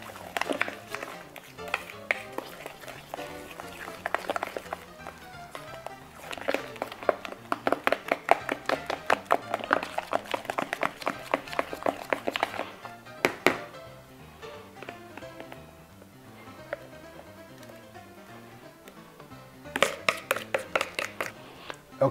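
Cornbread batter being stirred by hand in a bowl, a run of quick repeated strokes that comes and goes, loudest through the middle and again near the end. Background music plays under it.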